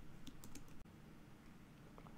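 A few faint keystrokes on a computer keyboard in the first second, typing the command that saves a file in a Vim-style editor.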